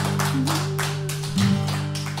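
Acoustic guitar playing: a chord rings on under quick, percussive strums, slowly getting quieter.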